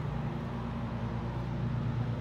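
A steady low engine hum, unchanging throughout.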